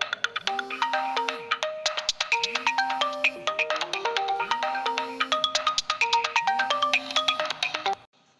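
Mobile phone ringtone: a short electronic melody playing loudly, repeating its phrase about every two seconds, then cutting off suddenly at the end.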